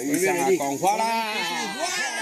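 A group of people shouting together in long, overlapping calls that rise and fall, shouting to the heavens for blessings as coloured paper is thrown into the air.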